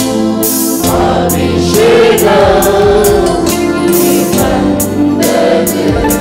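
Live Tamil Christian worship song: a man sings the lead into a microphone, with backing vocals, over a band with a steady drum beat.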